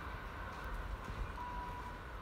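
A distant VIRM double-deck electric train approaching, heard as a steady high-pitched whine that fades slightly, with a short higher tone near the end, over a constant low rumble.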